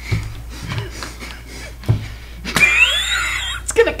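A woman's high, wavering squeal of held-in laughter, lasting about a second near the end, after a couple of soft knocks on the table.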